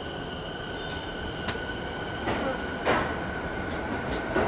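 Toei 10-300 series subway train pulling away, its Mitsubishi IGBT VVVF traction equipment giving a steady high whine at one pitch that fades after about two and a half seconds. Over a steady running rumble come a few sharp clanks from the running gear.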